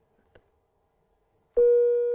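A steady sine-wave test tone of about 480 Hz, generated by a small C++ audio demo program, starts abruptly about one and a half seconds in and holds at one pitch. A faint click comes shortly before it.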